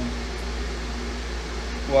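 A steady low mechanical hum, unchanging throughout, with a single spoken word at the very end.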